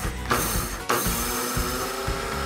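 Electric seed grinder running in short pulses as it grinds sesame seeds, with a fresh burst starting about a second in, over background music with a beat.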